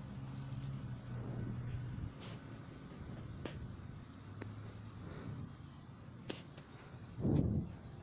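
Faint low hum of a distant vehicle engine running, strongest for the first two seconds and then weaker, with a few faint clicks.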